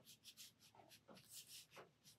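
Faint, quick strokes of a brush pen tip on sketchbook paper, several a second, as short lines for mushroom gills are drawn in.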